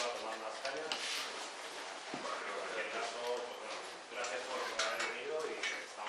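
Indistinct voices talking in a room, with a few faint knocks.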